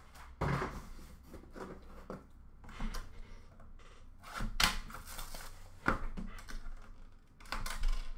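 Trading cards, plastic card holders and cardboard card boxes being handled: about five scattered knocks and clicks, with light rustling between.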